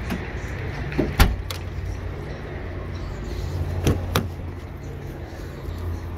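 A sedan's trunk lid swung down and latched shut with one sharp thump about a second in, then two lighter latch clicks a few seconds later as a front door is opened, over a steady low rumble.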